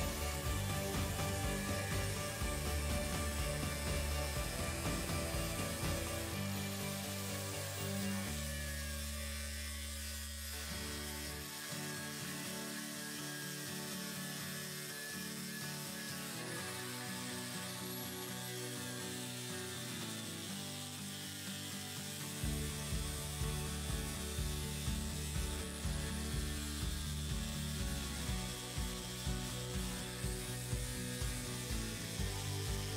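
Background music with a beat, over an electric angle grinder running a flap disc as it grinds down weld seams on steel square tubing.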